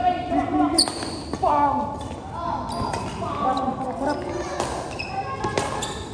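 Court shoes squeaking on the floor of an indoor badminton court as players move in a rally, with a few sharp racket hits on the shuttlecock, echoing in a large hall.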